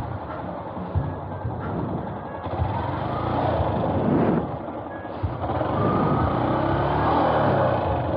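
Yamaha YTX 125's single-cylinder four-stroke engine running at low speed as the motorcycle creeps and turns at walking pace, getting louder in the second half.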